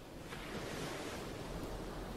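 Soft, steady rushing noise that swells a little a moment in.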